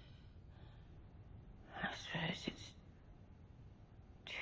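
A few quiet whispered words about two seconds in, over a faint low background rumble.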